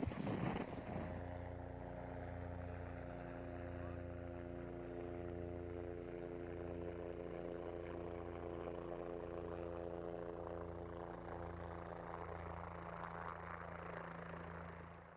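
Steady low mechanical hum made of several even tones, with an uneven throb underneath, like an engine or generator running at idle.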